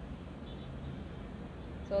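Steady low rumble and hiss of outdoor city background noise, like distant traffic, with no distinct events; a single spoken word comes right at the end.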